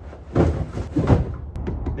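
Cardboard packages being set down and shifted on the van's cargo floor: two clusters of dull thumps, about half a second and a second in, the second the loudest.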